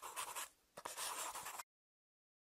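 Scribbling sound effect of writing, scratchy quick strokes. It drops out briefly about half a second in, comes back, and cuts off abruptly shortly before the end.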